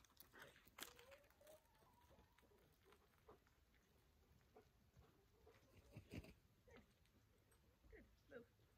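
Near silence: faint outdoor background with scattered soft clicks and a few brief faint sounds, the loudest a small cluster of clicks about six seconds in.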